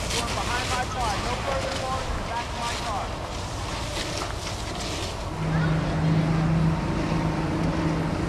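A burning RV trailer crackling under a firefighter's hose spray, with wind on the microphone and faint distant voices. About five seconds in, a steady low engine drone comes in and stays.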